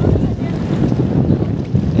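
Wind buffeting the microphone, a loud, gusty low rumble.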